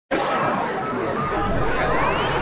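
Intro sound effect under an animated title graphic: a dense bed of crowd chatter, with a rising sweep in the last half-second.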